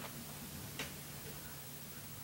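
Quiet room tone: a low steady hum, with one faint click a little under a second in.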